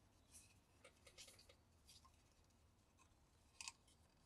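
Faint scratching strokes of a fine 3000-grit sanding pad on the plastic model truck cab, a few short strokes with the clearest near the end.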